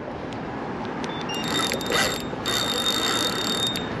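A 4000-size spinning reel ratcheting steadily under the strain of a big hooked drum, its mechanism clicking as line is worked against the fish, with a thin high whine joining in the second half.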